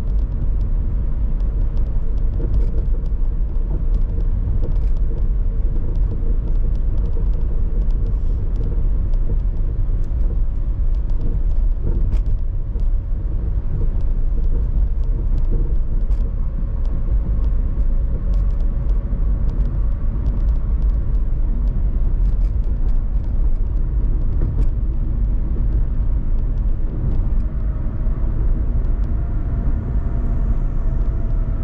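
Car driving at speed on an expressway: a steady low rumble of road and tyre noise with a faint hum, and small light clicks scattered throughout.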